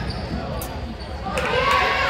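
Basketball game sounds on a hardwood gym court: a ball bouncing, with a couple of sharp knocks early. Raised voices from players or spectators start calling out about halfway through as a shot goes up.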